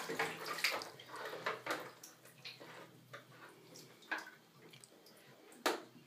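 Bathwater splashing and sloshing in a tub as a toddler plays with bath toys, in small irregular splashes, with a sharper splash or knock near the end.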